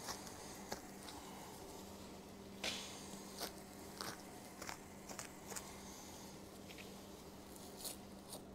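Knife cutting and hide being peeled away from the meat of a hanging deer carcass during skinning: faint, irregular crackles and snicks, the loudest a little under three seconds in, over a steady low hum.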